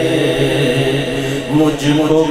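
A man's voice chanting an Urdu naat into a microphone, drawing out long held notes that slide between pitches.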